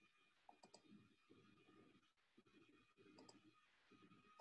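Near silence: faint room tone with two pairs of soft computer mouse clicks, one pair under a second in and another about three seconds in.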